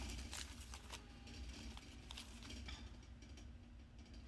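Faint rustling and a few light clicks of someone handling things while searching for a price tag, over a steady low hum.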